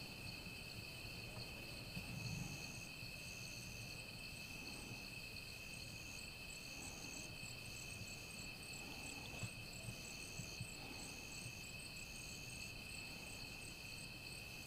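Night insects, crickets among them, calling in a chorus of several steady high trills, with one insect repeating a short high call about one and a half times a second from about two seconds in. A soft low thump comes about two seconds in and a few faint clicks near the ten-second mark.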